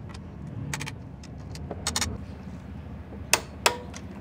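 Half-inch click-type torque wrench working a scooter's swing arm bolt: a few light clicks as it turns, then two sharp clicks about a third of a second apart near the end as the wrench breaks over at its set 49 newton-metres.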